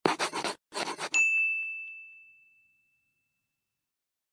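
Outro logo sound effect: two short bursts of noise, then a single bright ding that rings and fades out over about a second and a half.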